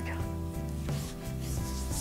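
Fingertips rubbing makeup base into the skin of the face, a faint rubbing under soft background music with sustained chords.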